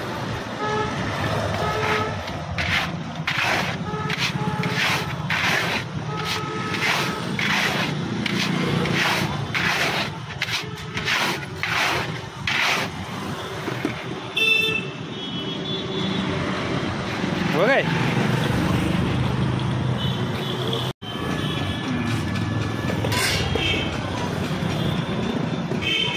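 Rhythmic scraping and hissing, about two strokes a second, of a metal mesh sieve being shaken through hot sand in an iron roasting pan to sift out roasted peanuts. Street traffic runs underneath, with short vehicle horn toots.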